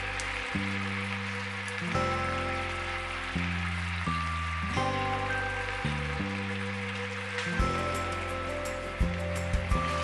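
Instrumental background music, its steady notes changing about every second, over the faint hiss of a tomato-and-wine sauce simmering in a pan. A few light knocks near the end.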